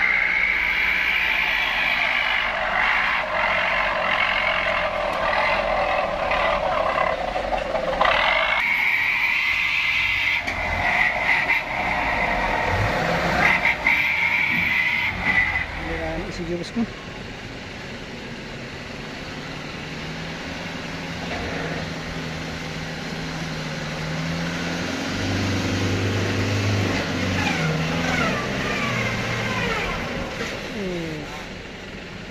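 Truck engine running hard under load, with people's voices; the sound is loudest through the first half, drops off suddenly past the middle, and the engine note climbs again near the end.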